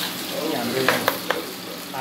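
Meat sizzling in a black wok on a gas burner while a metal spatula stirs it. Three quick sharp clicks of the spatula against the pan come a little after the middle.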